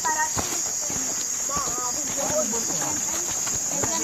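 A steady, high chorus of crickets, with footsteps on the ground and scattered brief voices from people walking.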